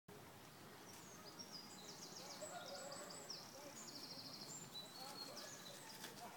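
Faint songbirds singing: several high, rapid trills and short repeated phrases over a quiet background hiss.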